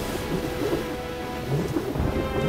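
Anime film soundtrack: a low, steady rumbling sound effect as smoke billows, with held music notes over it.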